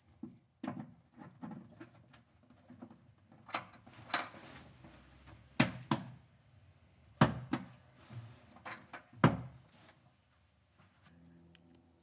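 A camper wiring plug and its cord being handled and fitted into a socket in a pickup's bed: an irregular run of small clicks and knocks, with a few sharper ones in the middle and later part.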